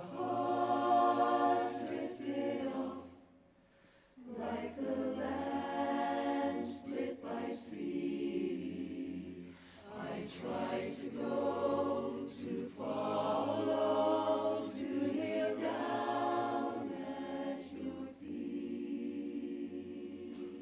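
Mixed-voice barbershop chorus singing a cappella in close harmony, in long phrases with short breaths between them, the longest break about three seconds in.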